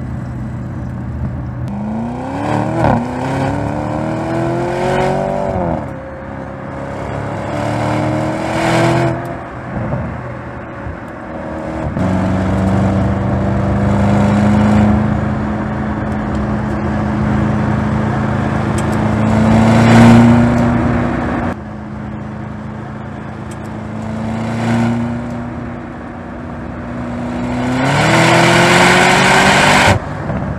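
Audi RS Q8 Performance's 4.0-litre twin-turbo V8 revving and accelerating. Its pitch climbs and falls away several times, holds at a steady high note through the middle, and climbs again near the end.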